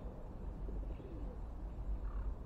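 A dove cooing in soft, low gliding notes, with a faint bird chirp about a second in, over a steady low rumble.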